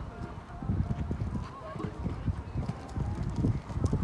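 Horse cantering on a sand arena: rhythmic hoofbeats on the sand, growing louder as the horse comes closer near the end.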